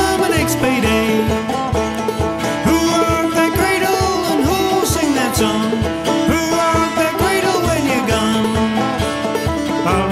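Instrumental old-time string-band music: plucked strings over a steady beat, with a melody line that slides up and down in pitch.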